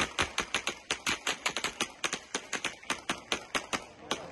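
Rapid, irregular gunfire, about five or six shots a second: warning shots fired to control a crowd.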